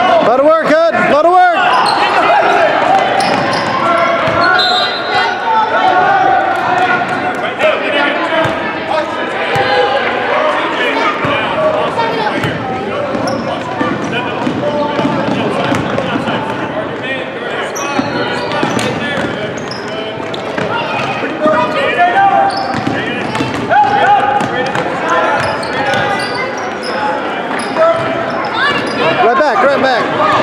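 A basketball bouncing on a hardwood gym floor amid indistinct chatter and calls from spectators, echoing in the large hall.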